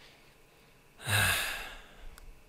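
A man's sigh about a second in: one long, loud breath out with a low voiced start, fading over about half a second.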